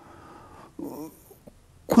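A man's brief cough-like vocal sound about three quarters of a second in, after a faint breath.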